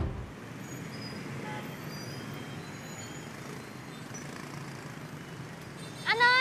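Steady street ambience: distant road traffic running as an even noise, with a few faint high chirps scattered through it.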